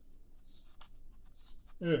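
Faint scratching and a few light clicks of a plastic phone holder being handled, followed near the end by a man's short spoken word.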